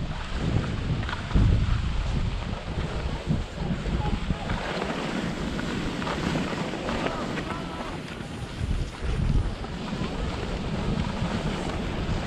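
Wind buffeting a GoPro microphone in uneven low gusts while skiing downhill, over a steady hiss of skis sliding and scraping on packed snow.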